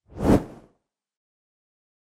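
A whoosh transition sound effect that swells and dies away within about half a second, as an animated news graphic sweeps onto the screen.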